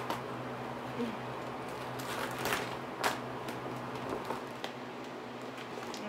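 A stiff vinyl mini skirt being pulled and handled to test its stretch, with scattered crinkles and a few sharp clicks. A steady low hum runs underneath.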